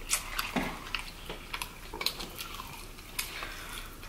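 Eating noises at close range: scattered small clicks and crackles of chewing fried chicken and handling it on a paper wrapper, with a few sharper ticks near the start and about three seconds in.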